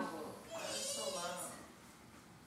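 A brief high, quavering voice sound, bleat-like, about half a second in, lasting about a second. At the very start the strummed guitar music is just dying away.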